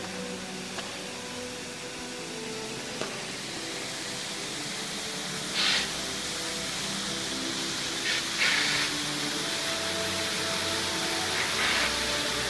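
Fountain water rushing steadily, swelling louder a few times, with faint slow background music underneath.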